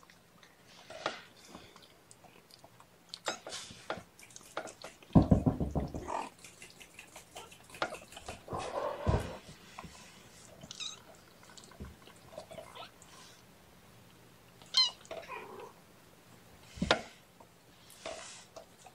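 Kittens about three and a half weeks old mewing now and then, with short handling noises in between.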